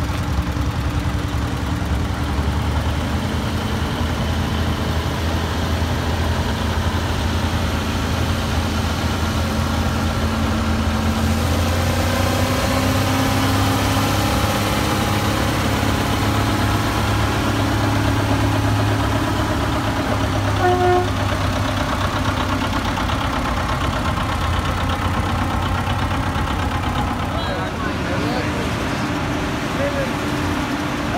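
Farm tractor engines running at low speed as the machines pass, a steady low drone that rises in pitch for a few seconds near the middle. A brief toot sounds about twenty seconds in.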